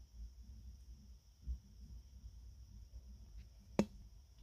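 Faint handling noise of plastic Lego pieces turned in the hands, with one sharp plastic click near the end.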